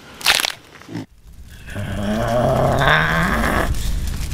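A short, sharp crunch-like burst, then a long, low, strained growl from a voice that rises slightly over about two seconds.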